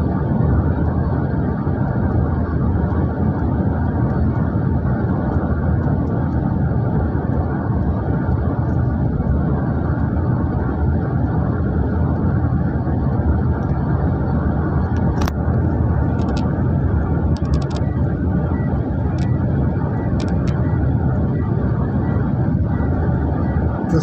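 Steady road noise inside a moving vehicle: a low tyre and engine rumble with wind, unbroken throughout. A few faint short clicks come in the second half.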